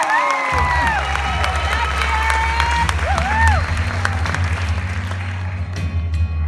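An audience cheers and whoops with applause. A low steady hum, likely from the sound system, comes in about half a second in.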